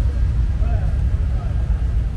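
Heavy, steady low rumble of outdoor background noise, with faint voices heard now and then.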